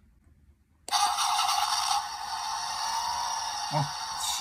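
Capsule-toy push-button engine starter playing its recorded car engine-start sound through its tiny speaker. It comes on suddenly about a second in, is loudest for the first second, then runs on steadily. It sounds thin and tinny, with no low end.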